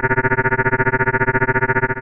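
A sustained electronic tone made of several steady pitches, pulsing rapidly about a dozen times a second.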